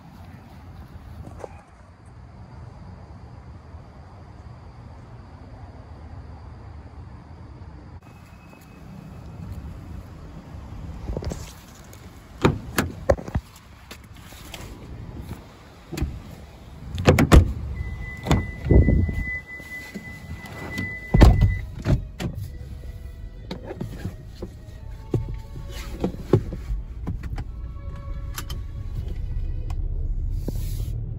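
Getting into a car and setting off: a series of loud thumps from the car door and seat, a steady high beep from the car for about three seconds, then music starting to play through the car's speakers over the low rumble of the car moving off.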